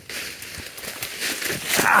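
Leafy brush and twigs rustling as a person pushes on foot through dense undergrowth, leaves brushing close past the microphone.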